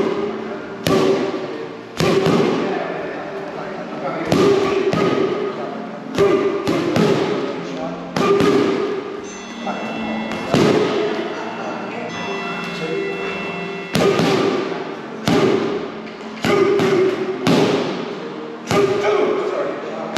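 Boxing gloves and padded boxing sticks striking each other in sharp, irregular smacks, often two in quick succession, echoing in a large hall.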